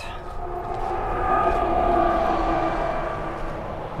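A road vehicle driving past. Its sound swells to a peak about halfway through and then fades, carrying a steady whine.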